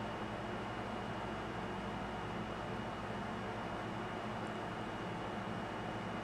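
Steady background hiss of room noise with a faint high tone running through it, and no distinct sounds.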